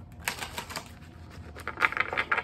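A deck of tarot cards being shuffled by hand, with quick runs of papery clicks as the card edges flick and slap together: one cluster in the first second and another near the end.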